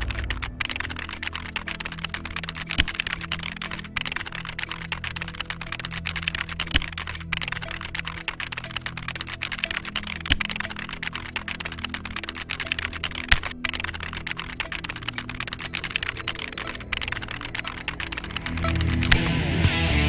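Rapid typing clicks, a typewriter-style sound effect keeping pace with text being typed out, over background music with sustained low notes; the music swells louder near the end.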